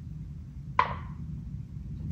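A single sharp knock a little under a second in: a die dropped into a felt-lined dice tray, landing with a short ring. A low, steady room hum runs underneath.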